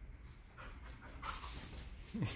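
Border collie panting, a quiet run of quick, irregular breaths that starts about half a second in.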